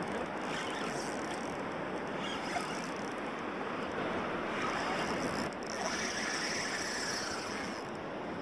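Steady wind and water noise on the open water, an even hiss with no distinct events.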